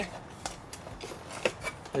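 A few scattered clicks and knocks of a hard plastic battery cover being pressed and shifted onto an e-bike frame in a tight fit.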